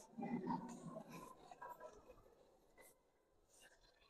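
Faint indoor gallery ambience: low voices of other visitors murmuring for about the first second and a half, then near silence with a few faint ticks and rustles.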